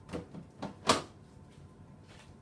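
Lid of a clear plastic storage bin being pressed down and latched shut: a couple of light plastic clicks, then a sharper snap just under a second in.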